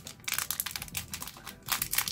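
A sealed packet of replacement hair-extension tapes crinkling and crackling as it is handled and torn open, the loudest crackle near the end.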